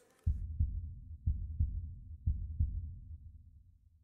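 Deep heartbeat-like double thumps from a broadcast's heart-logo sound effect, about one pair a second, fading away after three pairs.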